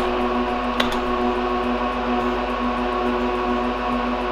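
Lenovo System x3650 M4 rack server's cooling fans running loudly and steadily, with a whine of several steady tones over a rushing hiss. A single click comes about a second in.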